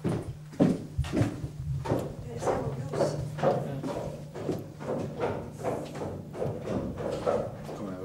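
Indistinct voices talking in a room over a steady low hum, with a few sharp thumps in the first second or so.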